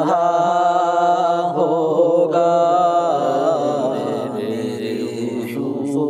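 Naat singing: a voice holding a long, wavering, ornamented note without words over a steady vocal drone. It settles into a steadier held tone in the last couple of seconds.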